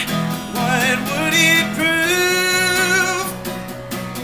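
A man singing live over an acoustic guitar, holding a long, wavering note through the middle of the phrase.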